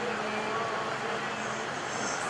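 Steady background noise with a faint low hum, with no speech.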